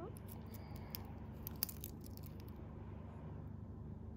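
Faint small clicks and clinks of a stainless steel watch bracelet and case being handled and turned in the fingers, a quick scatter of them in the first half, over a steady low hum.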